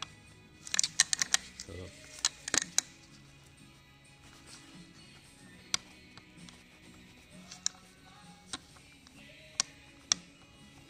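Metal-on-metal clicks from a Honda CR85 two-stroke's connecting rod being rocked by hand on its crankshaft: a quick run of clicks about a second in, another around two and a half seconds, then single clicks now and then. The knocking is the rod moving in its bearing, which the mechanic finds has quite a bit of play.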